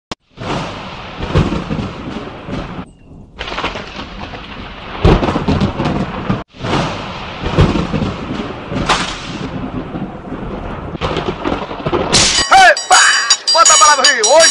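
Thunder rumbling in rolling peals over rain, broken off abruptly twice. Near the end a triangle starts ringing along with a man's voice.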